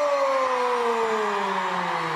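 A long, steady downward glide in pitch, a swooping sound effect that slides lower across about two seconds.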